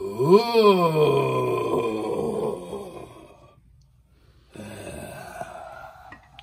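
A person's voice giving a long, spooky wail: the pitch swoops up and back down, then holds and fades out a little past the middle. A second, quieter moan follows near the end.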